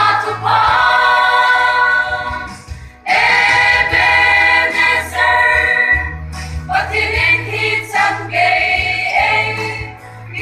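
Mixed church choir of young women and men singing a hymn, holding long chords with short breaths between phrases, over a steady low tone.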